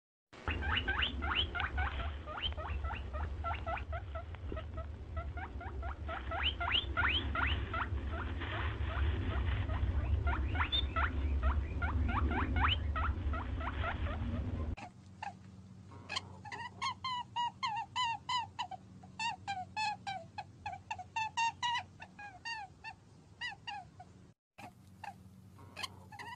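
Small animals giving rapid, repeated short squeaky chirps that slide down in pitch, over a heavy low rumble for the first fifteen seconds or so. After a sudden change in the recording, clearer chirps follow at about three a second.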